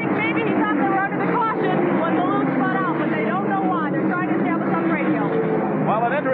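Talking over the steady running of NASCAR Winston Cup stock car V8 engines out on the track.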